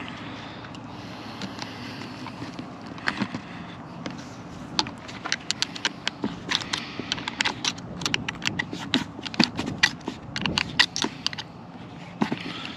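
Handling sounds of a corrugated plastic water hose and metal hose clamp being worked onto the plastic barb of an RV city water inlet fitting: irregular sharp clicks and scrapes, thickest in the second half, over a steady low hum.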